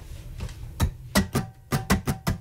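A run of sharp percussive clicks or taps, a few spaced ones about a second in, then quicker and more evenly spaced near the end, with a faint held tone beneath them.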